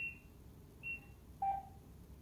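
Apartment door intercom giving short electronic beeps: two brief high beeps about a second apart, then a shorter, lower tone about a second and a half in.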